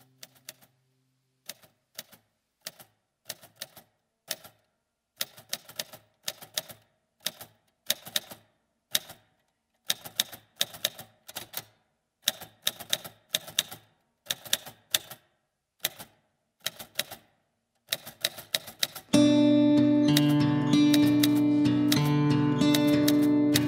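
Sharp mechanical clicks in short, irregular runs with pauses between them. About nineteen seconds in, the band's guitar-led music comes in loudly and holds steady.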